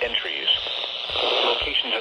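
Weather radio speaker playing a NOAA Weather Radio voice reading out a severe thunderstorm warning.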